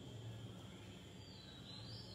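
A quiet pause holding only a faint, steady low hum and hiss of room tone.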